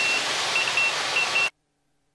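Steady rush of cockpit noise inside a Cessna Grand Caravan turboprop in flight, with a run of short, high-pitched electronic beeps over it. The sound cuts off suddenly about three-quarters of the way through.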